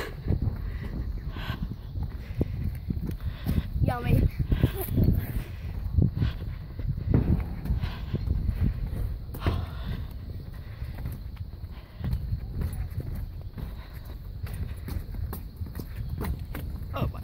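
Footsteps walking briskly across a steel footbridge deck, a steady run of short, irregular footfalls over a low rumble.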